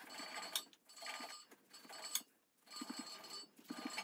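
Knife slicing between the skin and the meat of a raw pork belly: several faint cutting and scraping strokes, with a couple of sharp clicks.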